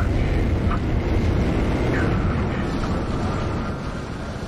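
Fighter jet in flight as heard from the cockpit in a film soundtrack: a loud, steady roar of engine and rushing air, easing slightly near the end.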